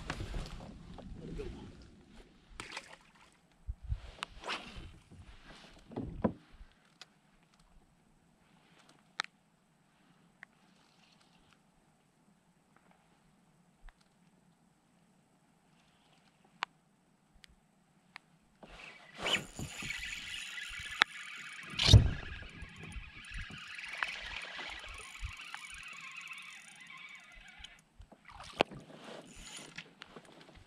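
Scattered knocks on a fishing kayak, then a quiet stretch. Near the end come about nine seconds of water splashing with one loud thump partway through, as a small bass is brought to the kayak's side.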